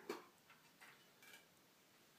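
A few faint clicks and taps of metal from a small brass tinder box being handled as its tight lid is worked at.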